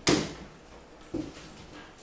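Two knocks as things are handled and moved about on a closet floor: a sharp one at the start that rings out briefly, and a softer one about a second later.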